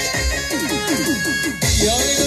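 Amplified Kurdish folk dance music from a band with bağlama and keyboard, over a steady beat about twice a second. In the middle comes a quick run of short falling notes, and near the end the music shifts into a new held note.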